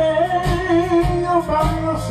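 Live blues band: a man sings one long held note with vibrato over electric guitar, electric bass and drums, then starts a new phrase near the end.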